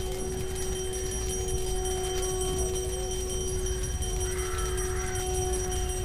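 Background music of a horror audio drama: a steady held drone of several sustained tones, with faint wavering notes drifting over it and a brief shimmering texture a little past the middle.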